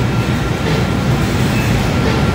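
Steady low rumble of supermarket background noise, with a faint steady high-pitched hum running through it.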